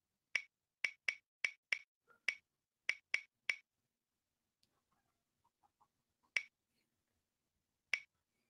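Ticking sound effect of an online spinning picker wheel, one sharp click per segment as the wheel turns past it. About nine quick ticks come at uneven, widening intervals, then a pause and two last, widely spaced ticks as the wheel slows toward a stop.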